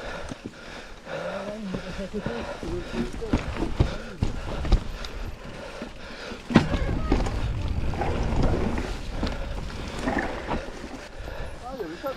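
Mountain bike ridden over a rough forest trail, heard from the handlebars: frame and drivetrain rattling over roots and stones, with rumbling wind on the microphone. A sharp, loud knock comes about six and a half seconds in as the wheels drop onto a rock slab.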